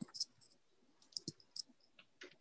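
Faint clicking of computer keys: a quick cluster of sharp clicks at the start, then a few more about a second later.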